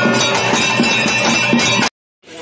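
Traditional ritual percussion: regular drum strokes under loud, continuous ringing of bells and cymbals. It stops abruptly near the end.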